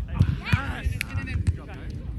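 Volleyball players' voices calling out during a rally, with a few sharp slaps of hands striking the ball.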